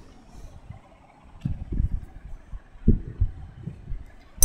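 A few dull low thumps, about one and a half and three seconds in, over the faint sizzle of appam batter frying in ghee in a cast-iron appam pan.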